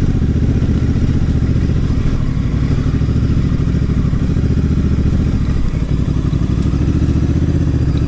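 Honda Africa Twin's parallel-twin engine running steadily as the motorcycle is ridden along a rough dirt trail.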